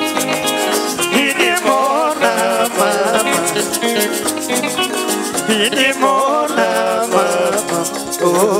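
Live band music: plucked guitar melody lines over a fast, steady shaker rhythm.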